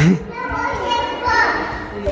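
Small children's voices calling and squealing as they play and run about a large hall, with a sharp tap right at the start.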